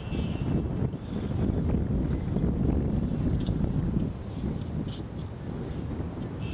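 Wind buffeting an outdoor microphone: a loud, low rumble that starts suddenly and eases somewhat after about four seconds.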